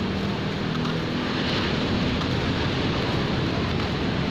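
Steady outdoor noise of wind and surf at a beach, a dense even rush with no distinct events.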